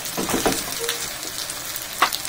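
Noodles frying in oil in a hot frying pan, left still to brown: a steady sizzle with scattered crackles.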